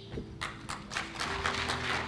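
Audience clapping: a few scattered claps that build into dense applause about a second in.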